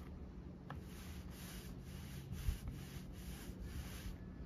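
Paint roller pushed back and forth over a sheet of plywood, giving a soft rubbing swish with each stroke, about three a second. One low thump about two and a half seconds in.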